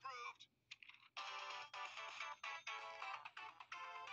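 A short burst of a cartoon voice, then from about a second in a bright, chiming jingle with many stacked notes, played back through a small device speaker.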